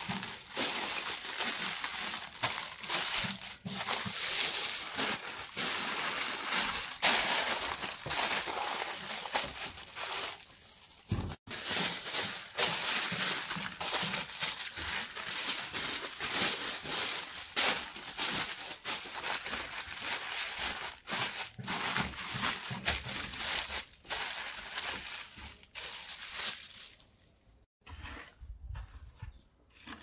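Aluminium foil crinkling and crumpling as it is folded and pressed by hand around a pumpkin, with many sharp crackles; the noise stops a few seconds before the end.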